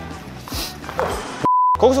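A short, steady electronic beep, one pure tone, about a second and a half in, with all other sound cut out beneath it, as in an edited-in bleep. Background music runs before it.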